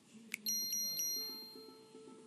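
Edited-in chime sound effect: a quick swish, then bright ringing bell-like tones struck three times in quick succession, their tones hanging on. A soft low musical pattern comes in after about a second.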